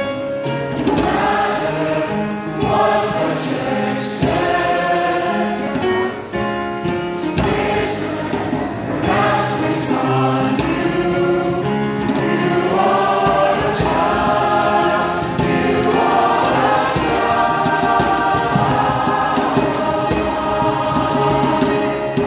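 A mixed choir of high-school-age voices singing together.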